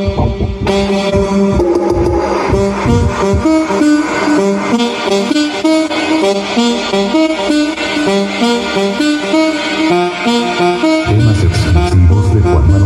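Samsung MX6500 mini system playing an instrumental tune loudly, a melody of short stepped notes, in a sound mode that the owner says muffles the sound. Deep bass comes in about a second before the end.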